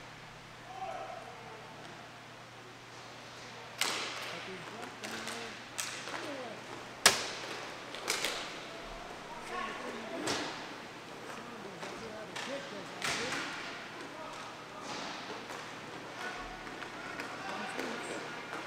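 Inline hockey play: a series of sharp cracks and knocks from sticks hitting the puck and the puck striking the rink boards, the loudest about seven seconds in, ringing in a large hall, with voices calling across the rink.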